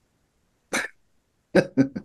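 A man laughing: one short breathy chuckle, then a quick run of short ha-ha pulses near the end.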